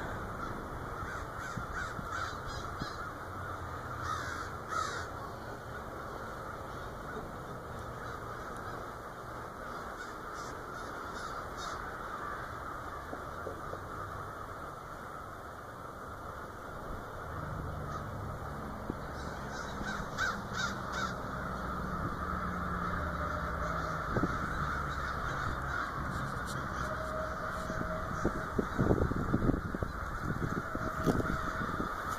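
A flock of crows cawing as they fly in overhead, with clusters of several caws every few seconds over a steady din of more distant calling. A low rumble runs under it in the middle stretch.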